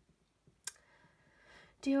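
A single sharp click in a quiet room, then a woman starts speaking near the end.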